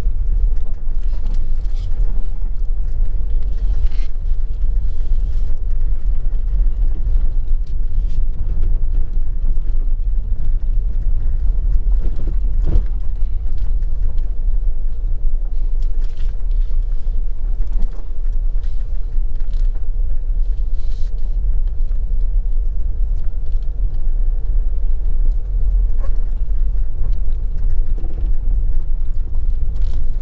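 Steady low rumble of a vehicle driving along a rough road, with scattered faint clicks and a sharper knock about twelve seconds in.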